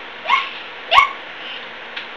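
A person's short, high yips, twice, each a quick upward yelp about two thirds of a second apart, mimicking a small animal's yipping noise.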